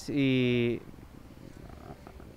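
A man's drawn-out hesitation sound, "ehh", held on one steady pitch for under a second, then a pause with only faint background noise.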